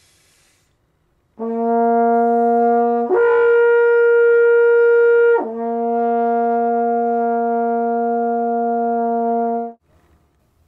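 A brass instrument played with an upstream embouchure holds a steady low note. It slurs up an octave and holds that, then slurs back down to the low note and sustains it, a demonstration of changing register.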